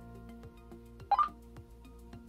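A Motorola T100 Talkabout walkie-talkie, powered from a bench supply at three volts, gives one short rising electronic beep about a second in, over soft background music.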